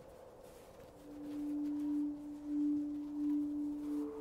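Soft background score of sustained, bowl-like tones. A single low note comes in about a second in and swells and fades slowly, and a higher note joins near the end.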